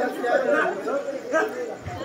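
Indistinct voices chattering, with no clear words.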